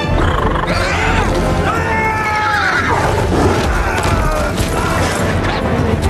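A horse's high whinny, gliding down in pitch about one to three seconds in, over loud film music.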